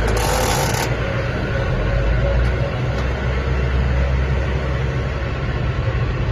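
Xinchai 4E30Y51 diesel engine of a 50 hp tractor idling steadily, heard from inside the cab, with a short hiss in the first second.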